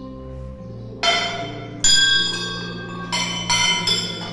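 Hanging brass temple bells rung by hand: a strike about a second in, another near two seconds, then three quicker strikes near the end, each leaving a bright, lingering ring.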